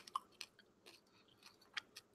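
Faint chewing close to a handheld microphone: a few soft, separate clicks from the mouth.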